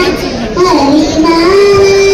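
A young girl singing into a handheld microphone, holding long notes: a held note, a dip to lower notes near the middle, then a rise to a higher note held from about one and a half seconds in.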